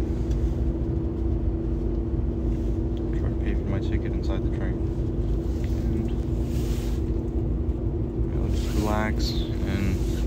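Passenger train running, heard from inside the carriage: a steady rumble with a low, even two-note hum under it.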